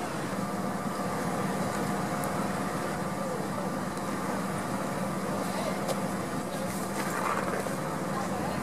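Ambulance engine idling steadily close by, with faint voices and a few light clicks and rattles in the last couple of seconds.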